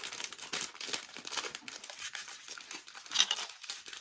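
Crinkly foil wrapper of a blind-box figure being crumpled and torn open by hand. It makes a continuous run of crackles, with one sharper, louder crackle a little after three seconds in.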